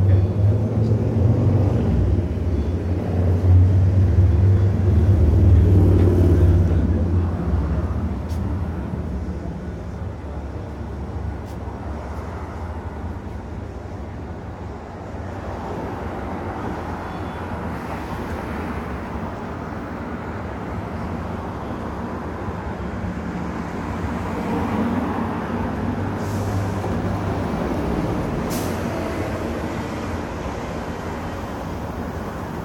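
Articulated natural-gas city bus engine running close by, a deep low rumble that is loudest for the first seven seconds and then fades. After that, steady street traffic with cars passing.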